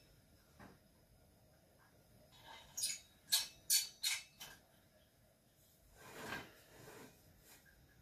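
Several light metallic clicks and clinks in quick succession, about five over two seconds, from the metal top and bail of a lit vintage Sears single-mantle lantern being handled, followed by a soft rustle.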